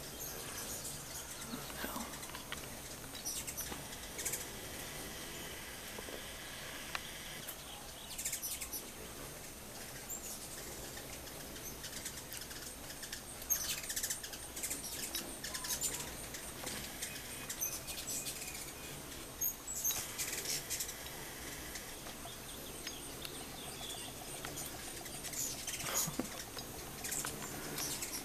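Hummingbirds at feeders making short, high chirps, coming in scattered clusters.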